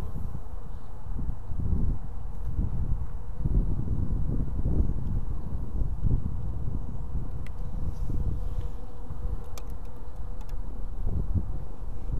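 Honey bees buzzing as a low, steady hum that swells and fades, with a few faint ticks in the second half.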